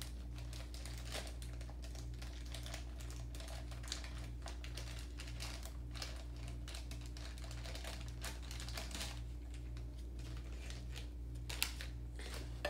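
Light scattered clicks and rustles of small craft-kit pieces being handled and fitted together, over a steady low hum.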